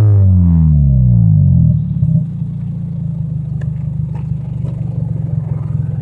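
Scion xB engine, with a modified intake and exhaust, falling from a high rev back down over about two seconds, then settling into a steady idle.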